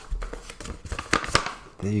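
Paper rustling and crinkling, a string of short crackles, as sheets of paper are handled.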